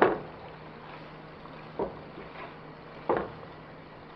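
Salt mackerel, onions and peppers frying in oil in a nonstick wok, a faint steady sizzle, with two short knocks of a plastic spatula against the pan, a little under two seconds in and again about three seconds in.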